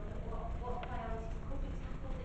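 A woman speaking in a meeting room, over a steady low background rumble.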